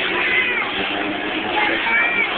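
Car tyres squealing on asphalt while drifting, in wavering high-pitched screeches about half a second in and again near the end, over a steady noisy din.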